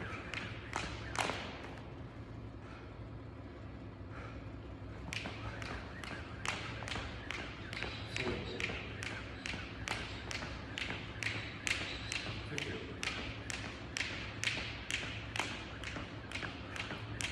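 Jump rope slapping a rubber gym floor in a steady rhythm of about two to three sharp slaps a second. The skipping stops for a few seconds near the start, then picks up again.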